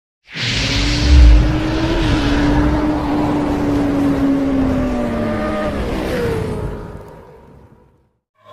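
Logo-intro sound effect of a motorcycle engine running at speed, with a deep boom about a second in. The engine tone holds steady, then slowly falls in pitch and fades out before the end.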